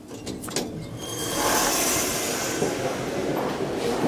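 Elevator doors sliding open with a rising rush of noise about a second in, followed by a few footsteps on a hard stone floor near the end.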